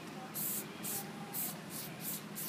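Aerosol spray-paint can sprayed in short hissing bursts, about four in two seconds.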